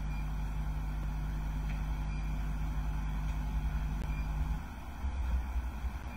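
Low steady hum and rumble with no speech, carrying a steady low tone that cuts off about four and a half seconds in, leaving only the rumble.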